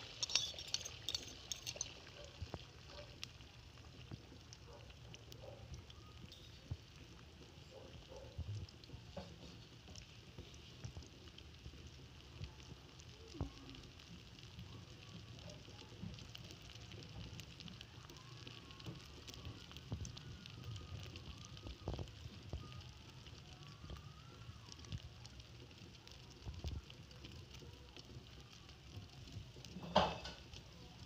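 Egg and potato omelette mixture frying in hot oil in a wok: a steady sizzle with scattered crackling pops, sharpest and densest in the first couple of seconds just after the egg hits the oil.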